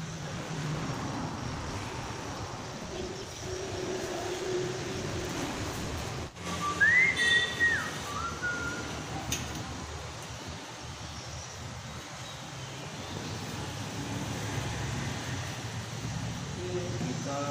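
A short whistle about seven seconds in: a rising note held briefly, then a drop to a lower note, over a steady low workshop background hum.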